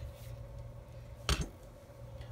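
One sharp click just over a second in from small metal jewelry pliers and a split ring being handled, over a faint steady hum.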